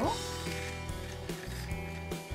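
Background music with held tones and a changing bass line.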